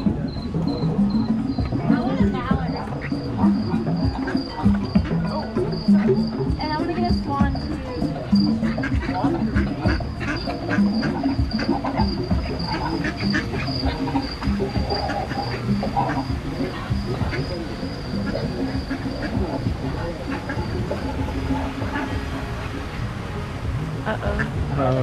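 A themed boat ride's background soundtrack: music with a high, thin chirp that pulses a few times a second at first and then runs on steadily, mixed with voices.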